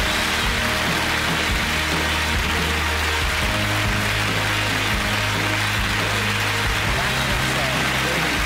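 Audience applauding over music with held low notes that change about three and a half seconds in.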